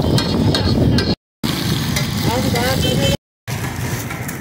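Malpura batter deep-frying in a large wok of hot oil, sizzling with quick crackles over a steady low rumble. After a brief cut, the crackling gives way to street noise with a voice in the background.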